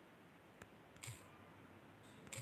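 Near silence: room tone with two faint short clicks, the second, about a second in, the louder.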